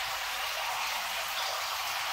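Steady, even hiss of water with no breaks or changes.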